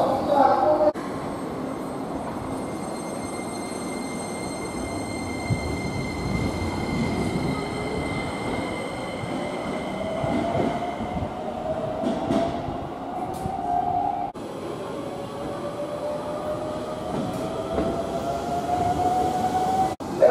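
Keikyu electric train running through the station, its motors whining in a tone that rises in pitch as it gathers speed, over a steady rumble of wheels on rail. The rising whine comes twice, the second time after a sudden cut at about 14 seconds.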